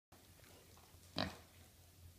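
A mini pig gives one short grunt about a second in.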